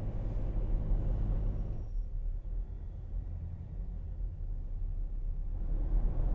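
Low, steady road rumble of a vehicle driving along a city street. About two seconds in, the higher hiss thins out and mostly the deep rumble remains.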